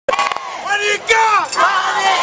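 Cheerleaders shouting a chant together in drawn-out yelled syllables, with a couple of sharp knocks near the start.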